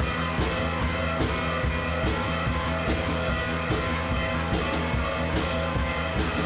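Rock music: a drum kit keeping a steady beat under guitar.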